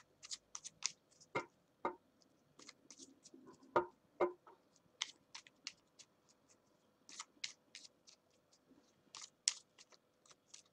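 A deck of cards being shuffled by hand, with quiet, irregular crisp clicks and flicks of the cards and a few sharper knocks in the first half.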